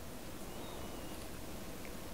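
Faint steady room tone, a low hiss with no distinct event, and a faint brief high thin tone about half a second in.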